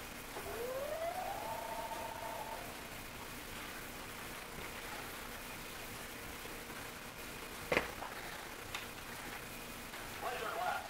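Buzz Lightyear toy helmet's electronic sound effect through its small speaker: a tone sweeps upward for about a second, then holds as a steady two-note tone for another second and stops. A sharp plastic click comes near the end, with a fainter one a second later.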